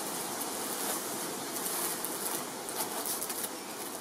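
Plastic packaging rustling and crinkling as it is handled, a steady low rustle.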